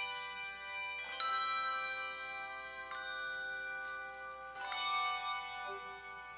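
Handbell choir ringing chords: three chords of several bells struck together, about a second and three-quarters apart, each left to ring on and slowly fade.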